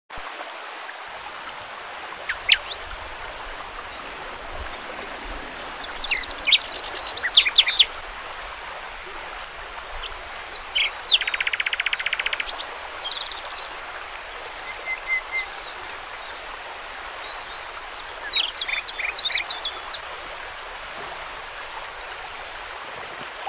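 Small birds singing in several separate bursts, including a fast, even trill about eleven seconds in, over the steady rush of a shallow river running over gravel.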